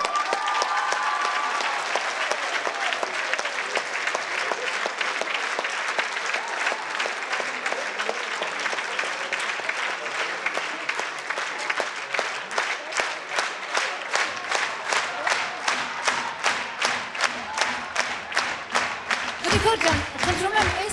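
Concert-hall audience applauding: a dense wash of clapping that, from about halfway through, settles into loud rhythmic clapping in unison, a little under three claps a second.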